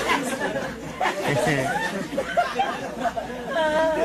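A live audience's many voices chattering and laughing together, a crowd reaction to a joke.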